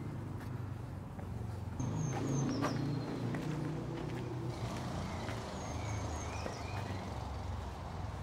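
Outdoor ambience of a steady low rumble of distant traffic, which swells about two seconds in. Over it a small bird chirps in two short bursts, and there are faint footsteps on a gravel path.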